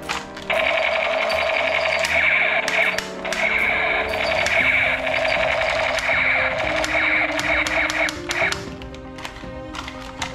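Battery-operated toy machine gun playing its electronic rapid-fire sound effect: a harsh, fast rattle that starts about half a second in, breaks off briefly near three seconds and stops well before the end. Background music runs underneath.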